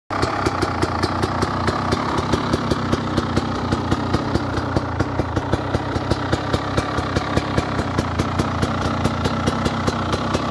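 KTM 250 EXC two-stroke enduro motorcycle engine idling steadily, with a regular sharp tick or pop about four to five times a second.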